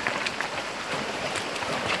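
Fast-flowing, shallow muddy river rushing steadily over stones, with a few faint splashes as horses wade into it.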